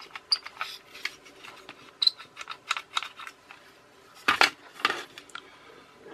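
Plastic toy boat hull and its small gear parts being handled, giving scattered light clicks and taps, with two louder knocks about four and a half seconds in as the hull is set down on a mat.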